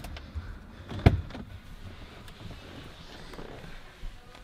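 A single sharp click about a second in, as the driver's door latch of a 2004 Jaguar X-Type releases, over the faint low hum of the car's 2.1-litre V6 idling.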